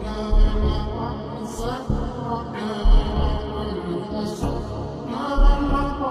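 Slowed-down, heavily reverberated pop song with its drums removed: sustained chords and deep bass swells under drawn-out, chant-like vocals.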